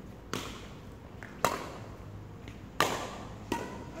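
Badminton racket striking shuttlecocks in a drill: sharp, cracking hits a little over a second apart, three loud and two softer, each with a short ring in a large hall.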